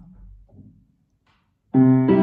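A piano comes in suddenly near the end with a loud chord of several notes that keeps ringing, the start of a song's accompaniment, after about a second of silence.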